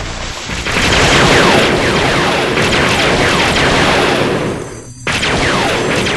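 Explosion sound effects: a long, loud blast starting about a second in and dying away, then a second blast breaking in suddenly about five seconds in.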